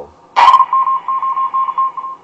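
A loud click as the Redifon GR345 transmitter is switched to CW, then a single-pitched Morse tone beeping on and off in short dots and longer dashes.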